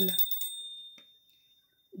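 The last held note of a sung devotional refrain dies away, while a thin high ringing tone fades out within the first second. A faint click follows, then near silence.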